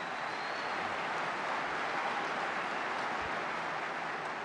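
Large audience applauding, a dense, steady clatter of clapping from a full hall.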